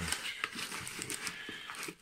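Brown kraft packing paper crinkling and rustling as a hand pushes and rummages through it in a cardboard box: a continuous crackle of many small sharp crackles.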